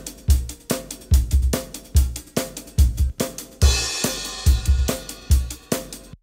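Multitracked acoustic drum kit (kick, snare and stereo overhead mics) playing back a steady beat with a cymbal crash a little past halfway. The take has just been quantized to eighth notes with AudioSnap, so it plays tighter while keeping its natural tempo drifts.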